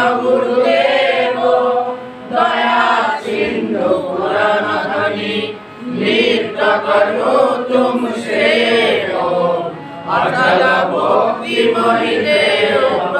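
A group of voices chanting a devotional prayer together in unison, in phrases of a second or two with short breaks between them.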